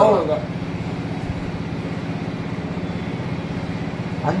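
A steady low mechanical hum, like a motor or machine running, holding at an even level. A man's voice trails off just after the start.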